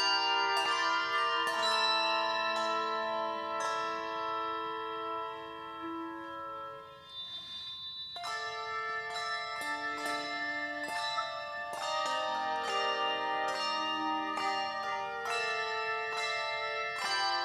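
Handbell choir playing chords: struck bells ring on with a long sustain. The chords die away to a brief low point about seven seconds in, and a new phrase of struck chords starts a second later.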